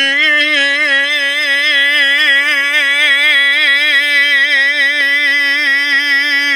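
A man singing a Balkan folk song unaccompanied, holding one long, loud note with a wide, even vibrato.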